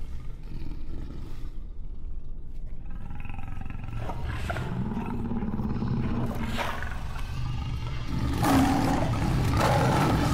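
Lions growling low and deep, building to loud roars from about eight and a half seconds in.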